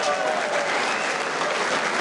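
Audience applauding steadily, a dense even clatter of many hands.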